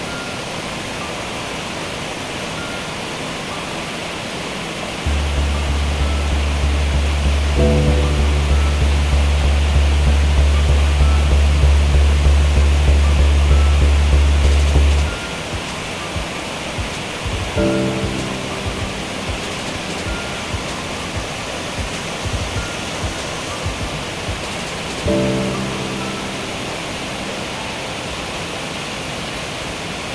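Steady rush of a waterfall, with background music over it. The music has a loud, deep, pulsing bass tone from about five to fifteen seconds in, and a few chords that sound now and then.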